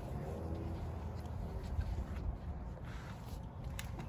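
Low wind rumble on the microphone, with a few faint clicks.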